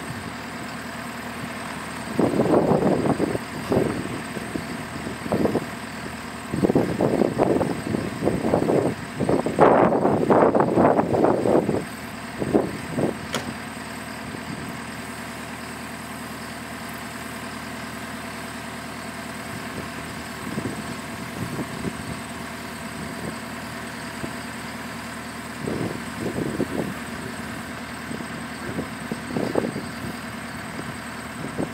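JCB skid-steer loader's engine running steadily while holding a loaded Bagster bag of wooden posts up on its pallet forks, with repeated louder surges of engine noise in the first twelve seconds.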